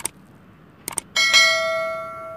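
Two sharp double clicks, one at the start and one just before a second in, then a bell struck once that rings out with several steady tones and fades slowly.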